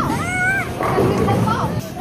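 A small child's high-pitched squeal, one call that rises and then falls, followed by a woman's voice and the general chatter of a busy bowling alley.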